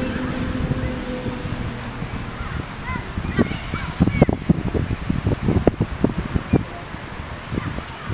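Distant high-pitched shouts of children playing football, a few short calls around three to four seconds in. In the second half there is a run of irregular low thumps, and a steady low hum fades out during the first second and a half.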